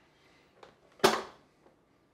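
One sharp click about a second in with a short ring-out, with a couple of faint ticks before and after it, as the rice is being started.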